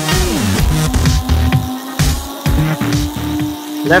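Electronic background music with a pulsing low bass line.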